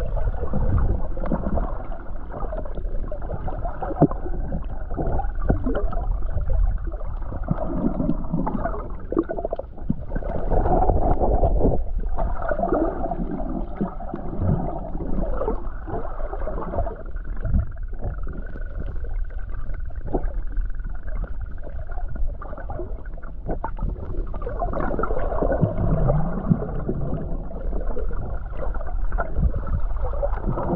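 Muffled gurgling and sloshing of water around a camera held underwater, with shifting bubbling swells.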